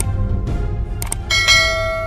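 Channel logo sting: a deep low drone with quick clicks, then a bright bell-like chime struck about a second and a half in, ringing on as it fades.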